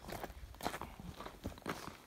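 Hiker's footsteps on a loose, rocky trail: several uneven steps crunching on stones.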